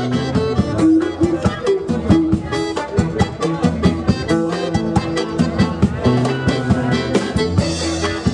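A live band playing an instrumental passage: a drum kit keeps a fast, steady beat under accordion and electric guitar.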